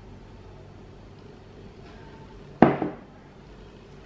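One sharp clink of kitchen glassware about two and a half seconds in, with a short ring: the emptied glass measuring cup being set down. Otherwise quiet room tone.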